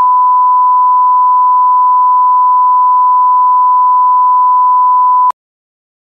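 Loud, steady 1 kHz line-up test tone of the kind that accompanies colour bars, cutting off sharply about five seconds in.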